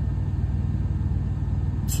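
Steady low machine hum that holds level and pitch throughout.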